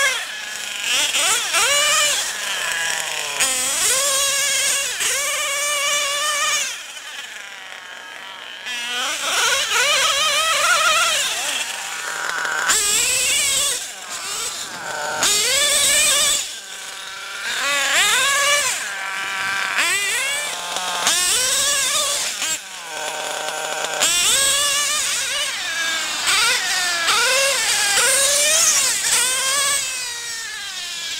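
Modified O.S. .28 two-stroke nitro engine in a Mugen MBX-5T RC truggy running hard under repeated throttle bursts, its pitch climbing and falling with each burst. Short quieter lulls come between runs, the longest about seven seconds in.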